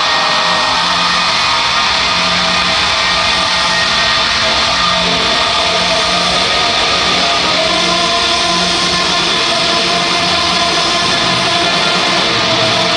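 Rock band playing live in an arena: electric guitars, bass and drums, loud and steady, heard from the crowd.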